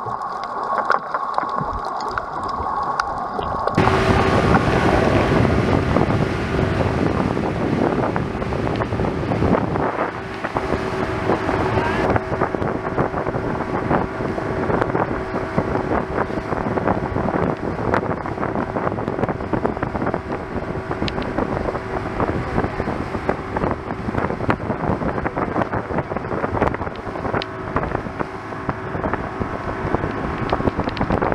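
Muffled underwater sound, then, about four seconds in, a motorboat running at speed: a steady engine hum under loud wind buffeting the microphone and rushing water.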